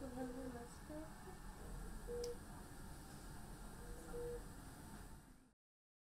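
Soft, short hummed notes from a woman cooing to the baby in her arms, a few scattered notes on a steady pitch. The sound fades out and stops in the last half second.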